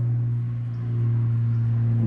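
A steady low hum with fainter steady tones above it.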